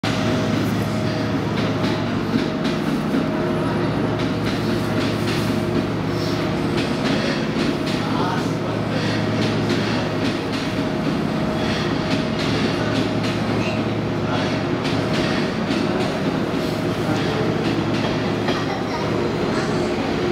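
JR East 185 series and 651 series electric express trains pulling out of a station platform: a steady hum with several held low tones over the rumble of the cars rolling past.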